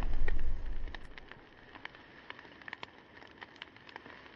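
Fire-burst sound effect dying away: a low rumble fades out over the first second, leaving faint scattered crackles like burning embers.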